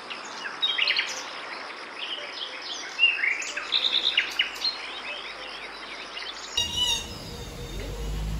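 Several small birds chirping and calling in quick, high notes over a steady outdoor hiss, busiest around the middle. Near the end it cuts abruptly to another recording with a short run of bird calls.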